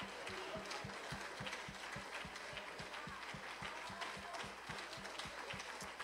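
Congregation clapping their hands in praise, faint, with a fast steady clapping beat of about five claps a second over the general applause.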